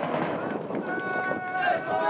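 Baseball players shouting drawn-out calls during an infield fielding drill, several voices overlapping, the shouts swelling about a second in.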